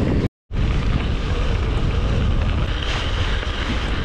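Wind rushing over the microphone of a camera on a bike rolling along a wet gravel track, a steady rumble with no pauses apart from a brief total dropout about a third of a second in.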